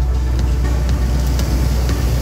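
Steady, loud low rumble of background noise.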